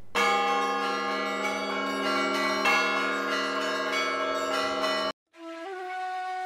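Church bells ringing together in a dense, steady clang, cut off suddenly about five seconds in. After a brief silence, a held wind-instrument tone begins and steps up in pitch.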